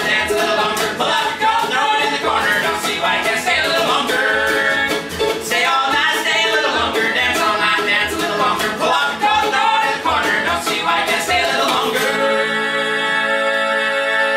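Acoustic string band of mandolin, upright bass and acoustic guitar playing an up-tempo old-time tune with singing, the notes quickly picked. About twelve seconds in it changes abruptly to long, steady held notes.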